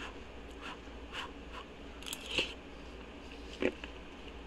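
Quiet eating sounds: a spoonful of chicken and sausage gumbo being taken and chewed, heard as a few scattered soft clicks and mouth smacks.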